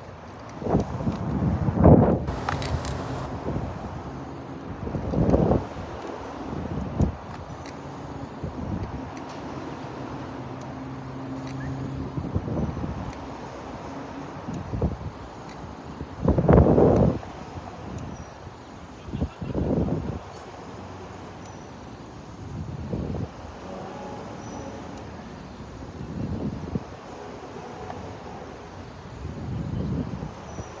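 Wind buffeting a ride-mounted camera's microphone aboard a Slingshot reverse-bungee capsule, with several short loud bursts of the rider's laughter and a low steady hum in the middle.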